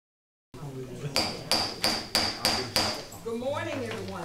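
Gavel rapped six times in quick succession, about three strikes a second, each strike with a short high ring: the chair calling the meeting to order.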